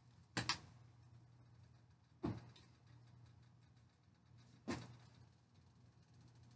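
Three short knocks of a cooking utensil handled at the stove, about two seconds apart, over a faint low hum.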